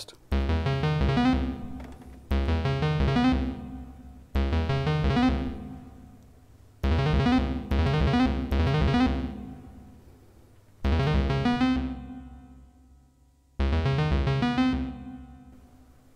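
Analog modular synthesizer voice playing an eight-step sequence from two daisy-chained Q179 Envelope++ modules running unsynchronized on their internal clocks, one fast and one slow. Six bursts of rapidly stepping notes, each starting loud and fading away before the next begins.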